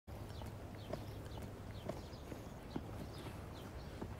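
Faint ambience with a steady low rumble, high bird chirps, and several soft knocks spaced about half a second apart.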